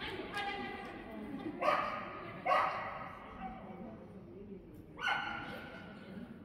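A dog barking in short, excited barks: three sharp ones about one and a half, two and a half and five seconds in, after a longer call that trails off in the first second.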